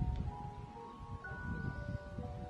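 Background music of soft chime-like notes, each ringing on and overlapping the next in a slow melody, over a low rumble.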